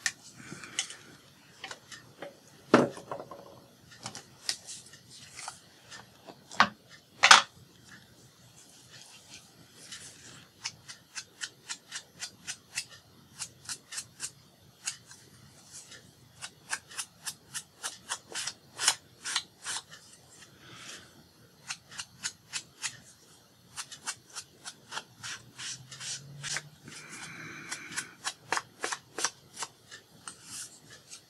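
A foam ink blending tool dabbed again and again on an ink pad and on the edges of a paper piece, in quick taps of about four a second, to ink and distress them. Two sharper knocks come in the first several seconds.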